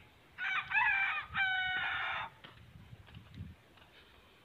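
A rooster crowing once, a call of about two seconds that wavers in pitch at first and ends on a long level note.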